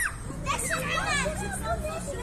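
Several children's voices calling out and shrieking, overlapping, high-pitched and rising and falling, over a steady low rumble.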